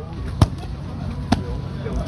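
Two sharp smacks of gloved punches landing, the first about half a second in and the second a second later, over a steady low hum and faint voices.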